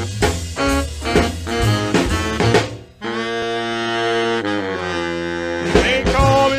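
Instrumental intro of a rhythm-and-blues record: saxophones and brass punch short chords over drums and bass, then about three seconds in the horns hold one long chord.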